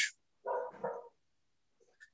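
A dog barking faintly in the background: a quick double bark about half a second in.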